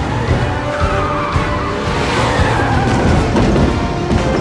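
Car tyres squealing in a skid over engine noise, the squeal sliding down in pitch from about a second in until near the end, with a film score underneath.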